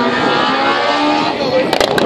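Rally car engine running out on the stage, its pitch drifting as it drives, heard over spectators' talk.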